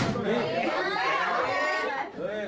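Several people talking over one another in a room, with a single sharp click right at the start.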